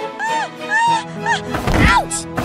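Background music with three short voice-like whimpers, then a loud cartoon thud sound effect near the end for a fall to the floor.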